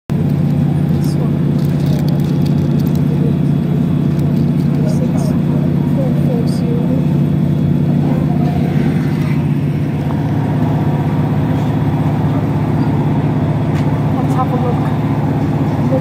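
Underfloor diesel engine of a Class 156 Super Sprinter diesel multiple unit, heard from inside the passenger saloon, running with a loud, steady low drone.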